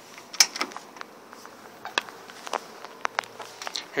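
Scattered light clicks and knocks, about eight in all, from someone climbing into a tractor cab past the open door, over a faint steady low hum.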